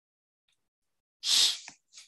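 A person sneezes once, a single short, loud burst about a second in.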